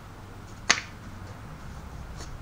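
One sharp wooden click, a little over half a second in, as a handmade wooden drill-bit box is handled and its two halves are pulled apart.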